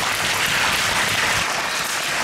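Crowd applauding, many hands clapping.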